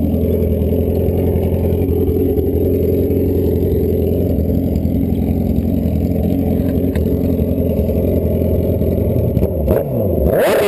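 Drag-racing motorcycle engine idling steadily at a loud, even pitch, with a couple of sharp clicks near the end.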